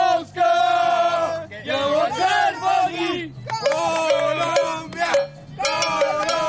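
A small group of football fans chanting together, loud men's voices shouting in unison in about four drawn-out phrases with short breaks between them.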